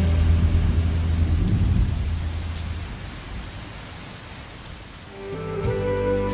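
A steady rain-like hiss with a low rumble like distant thunder that dies away about three seconds in. The hiss then fades down, and new music starts near the end.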